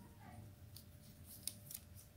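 Faint, light clicks and rustles of a plastic earbuds charging case in its protective plastic film being handled, with a couple of sharper clicks near the end.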